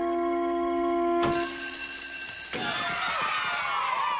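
An electric school bell starts ringing about a second in and keeps ringing, and about halfway through a crowd of children breaks into shouting and cheering over it.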